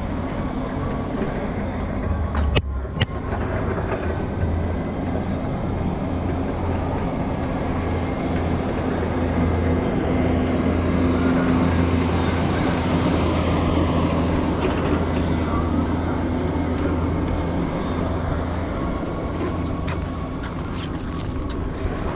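Engine running steadily, a low hum over a noisy rush that swells about halfway through.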